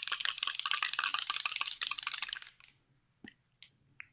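A small spray bottle of Distress Mica Stain shaken hard, its contents rattling in a fast, even run of clicks. The shaking stops about two and a half seconds in, followed by a couple of faint clicks near the end.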